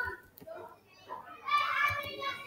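Indistinct voices talking, loudest near the end.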